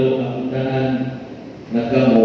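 A priest's voice chanting on a nearly steady pitch in two phrases, with a short break about one and a half seconds in.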